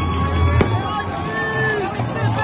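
Fireworks going off, with one sharp bang less than a second in, over music and the voices of a crowd.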